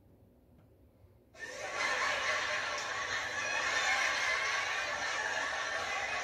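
Recorded audience laughter from a canned laugh track, coming in suddenly about a second in and carrying on steadily as a dense crowd laugh.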